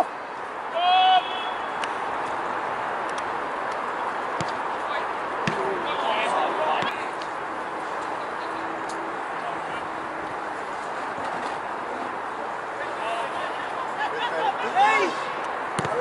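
Steady open-air hiss of a football pitch, with players shouting across the field: one short, loud call about a second in and fainter calls later. A few faint knocks are also heard.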